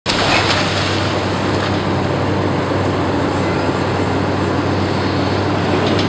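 Caterpillar demolition excavator with hydraulic shears running steadily: a constant low engine hum under an even rush of noise.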